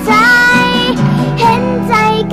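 A young girl singing a Thai pop ballad, holding and bending long notes, to her own acoustic guitar accompaniment.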